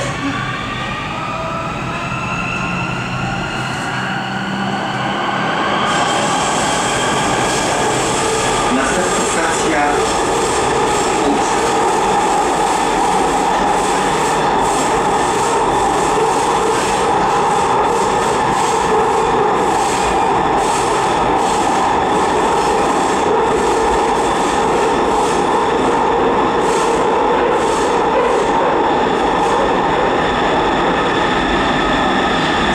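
Siemens Inspiro metro train accelerating away from a station: its electric traction drive whines in several tones that rise steadily in pitch for the first few seconds. Then the train settles into a louder, steady tunnel run of wheels on rail, with frequent short clicks.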